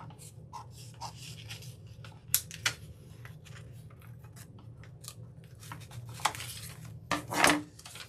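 Scissors snipping through a thin rub-on transfer sheet and its silicone backing paper, with a few sharp snips and paper rustling, and a louder clatter near the end as the scissors are put down on the table.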